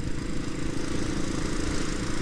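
Kawasaki 250 cc single-cylinder dual-sport motorcycle engine running at a steady cruise, with wind and road noise on the helmet-side microphone.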